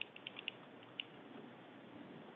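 Faint background hiss of a remote call, with a quick run of small, faint ticks in the first half second and one more tick about a second in.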